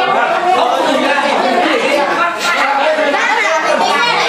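Many people talking over one another: a steady, loud chatter of voices with no single speaker standing out.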